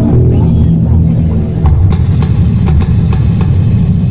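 Live band playing amplified through a PA: drum kit, bass and guitars, with a steady run of sharp drum hits from about a second and a half in.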